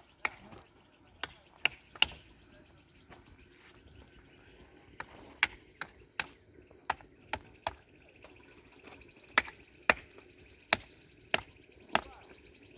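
Sharp, short knocks, about fifteen at irregular intervals, of the kind stones make knocking together as a stone wall is handled. A faint steady high hum comes in during the second half.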